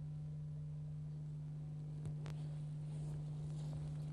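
A steady low hum at a single pitch, the background hum of an old videotape recording, with a faint click about two seconds in and a light hiss near the end.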